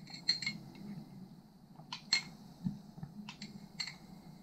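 Light, ringing clinks of a drinking glass being handled: about seven short taps, unevenly spaced, the loudest just after the start and about two seconds in.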